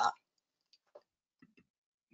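A voice finishes a word, then near silence broken by a few faint, short clicks.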